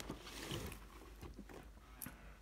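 Faint handling noise of a cardboard model-railway coach box being slid out of a stack of boxes: a soft knock as it starts, a light rustle of cardboard, and another short knock near the end.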